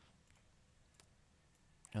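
Near silence with two faint, short clicks, one about a second in and one near the end, like a computer mouse being clicked.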